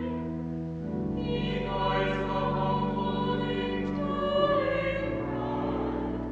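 A small choir singing sustained chords, the held harmonies moving to a new chord every second or two over steady low notes.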